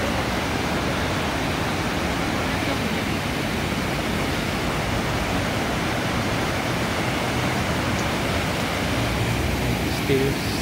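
Steady rush of a swollen river pouring over a weir, white water churning below it.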